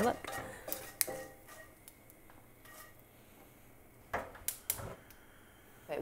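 Pumpkin seeds toasting in an oiled skillet, with scattered sharp clicks and small pops against the pan: a few near the start and a short cluster about four seconds in.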